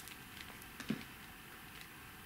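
Faint ticks and light patter of a small pot of Brusho ink powder being shaken and tapped over damp card, with a short spoken "a" about a second in.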